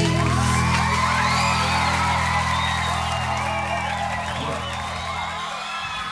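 A live band's held final chord slowly fading, with a crowd screaming and cheering over it in high, wavering voices.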